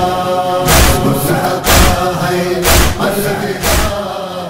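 Noha recitation: male voices chanting in chorus over a heavy beat that falls about once a second.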